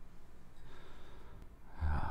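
Quiet room tone, then a man's soft breath through the nose near the end.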